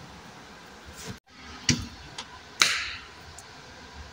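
Handling noise from a hand-held phone: a few scattered light clicks and knocks over quiet room tone, with a short rustle about two and a half seconds in. The sound drops out completely for a moment about a second in.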